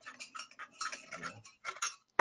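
Faint, irregular metallic ticking and light scraping, several small clicks a second, as a hand tool turns an M8 screw into a sliding nut on an aluminium mounting rail.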